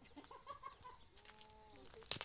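A chicken clucking: a few short clucks, then one longer drawn-out call.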